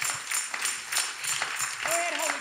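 Hands clapping in a steady rhythm, about four claps a second, with a voice coming in near the end.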